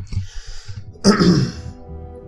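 A man clearing his throat once, a short rough burst about a second in, over soft background music.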